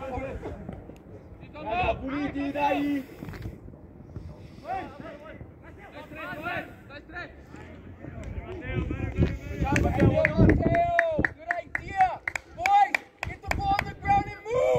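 Shouted calls from players and coaches across a football pitch during play, scattered at first and more frequent and louder in the second half, with a few sharp clicks near the end.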